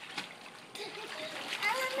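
Water splashing in an above-ground swimming pool as children move through it, with a child's voice heard faintly in the second half.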